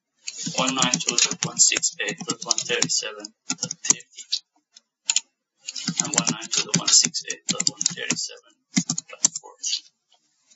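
Typing on a computer keyboard in two quick runs of keystrokes a few seconds apart, with a few single key or mouse clicks near the end.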